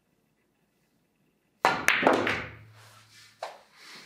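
Pool shot with a Fury cue: the cue tip strikes the cue ball about one and a half seconds in, followed at once by a sharp ball-on-ball click. The object ball then rattles into a pocket and rolls away with a low rumble, and another knock of the balls comes near the end.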